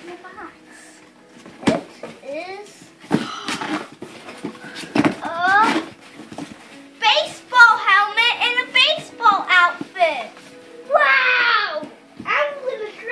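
Children's high-pitched excited voices and squeals, busiest in the second half, with music playing faintly underneath. A couple of short sharp noises in the first half come from a taped cardboard box being torn open.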